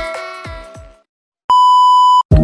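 Electronic intro music with a deep drum hit fades out, and after a short silence a loud, steady electronic test-pattern beep starts about one and a half seconds in.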